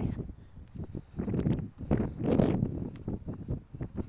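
Steady high-pitched insect chorus, crickets or cicadas, in Florida scrub. Two louder, rough noise swells come about a second and two seconds in.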